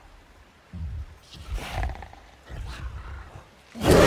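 Giant gorilla vocalizing, a film creature effect: a run of deep, low grunts and growls, then a loud roar breaking out just before the end.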